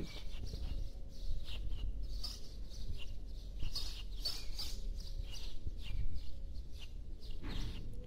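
Small birds chirping in short, scattered calls over a low steady rumble of outdoor background noise.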